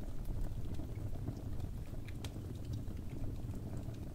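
Wood fire crackling in a fireplace: a steady low rumble of burning with scattered small sharp pops and crackles, one clearer pop a little past two seconds in.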